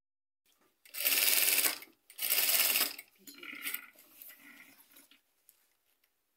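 JACK industrial sewing machine stitching along the edge of a fabric waistband in two short bursts, about a second and then just under a second, with a rapid, even run of needle strokes.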